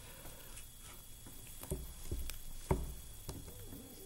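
A few faint clicks and light taps from gloved hands pushing dissecting pins through a preserved dogfish into the dissecting pad beneath.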